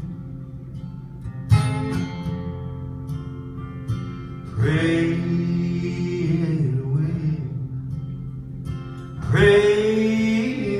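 Two acoustic guitars strummed live in a country gospel song, with a man singing a phrase about five seconds in and again near the end.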